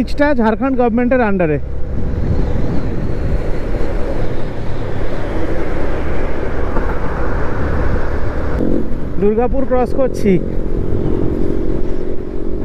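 Motorcycle running steadily at road speed, with heavy wind rush on the rider's camera microphone over a low engine drone.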